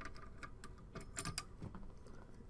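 Small metallic clicks and ticks from a motherboard CPU socket's retention lever and metal load plate being unlatched and swung open, with a quick cluster of clicks a little past one second in.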